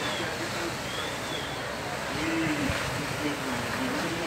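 Steady rushing noise from a burning house, with faint distant voices over it.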